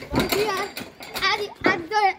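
A child's high-pitched voice talking and calling out in short phrases.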